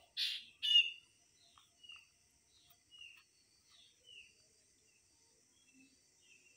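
A small bird chirping: two loud, short chirps in the first second, then fainter chirps about once a second, each dropping slightly in pitch, over a faint steady hiss.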